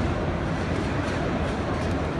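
Steady background noise of a busy motor-show exhibition hall: an even low rumble and hiss with no distinct events.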